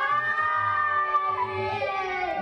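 A group of young Cub Scout boys roaring together in imitation of tigers: a long, drawn-out roar of several overlapping children's voices, the pitch sinking in the second half.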